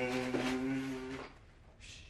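A man's voice holding one steady low hum that stops just over a second in, followed by a short hiss near the end.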